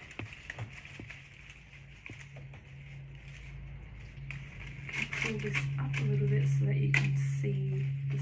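Dry flower stems and seed heads rustling and crackling as they are pushed into a dried-flower bouquet by hand, with a steady low hum that grows louder in the second half. A voice comes in softly near the end.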